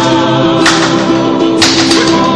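Tongan song: voices sing a long held note over the accompaniment, with a sharp percussive hit about once a second.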